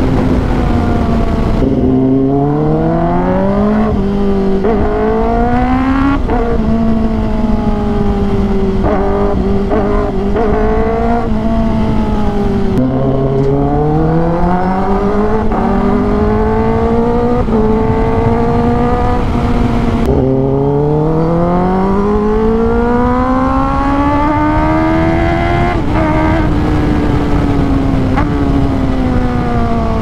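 Kawasaki ZX-10R's inline-four engine revving through the gears while under way, its pitch climbing steadily and dropping back sharply at each gear change, several times over. Wind rushes steadily underneath.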